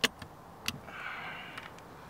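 Sharp clicks and light taps as a hand grips and handles a softopper's metal tube frame, the loudest right at the start and another under a second later, with a brief soft rustle in between.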